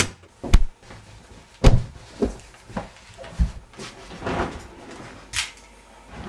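A scuffle between two men over a pistol: a run of sharp, irregular knocks and thumps of bodies and hands against each other and the room, about half a dozen, the loudest in the first two seconds.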